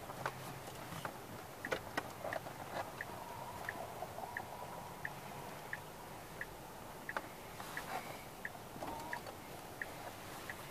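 Tesla Model S turn-signal indicator ticking steadily in a quiet cabin, about three short high ticks every two seconds, with a few soft knocks in the first two seconds.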